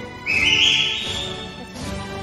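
A loud, high whistle that steps upward in pitch, lasting about a second and a half, over steady instrumental background music.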